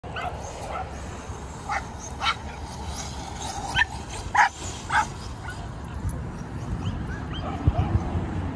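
Several dogs barking and yipping, with a run of short sharp barks in the middle, over a steady low rumble.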